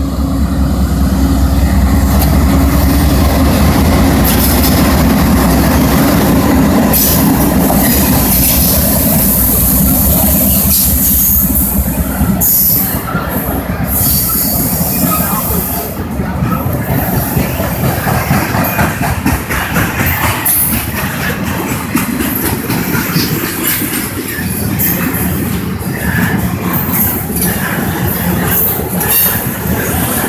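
Norfolk Southern diesel locomotives passing close by with a deep steady engine drone for the first several seconds. Then a long string of container cars rolls past, its steel wheels rumbling and clattering on the rails.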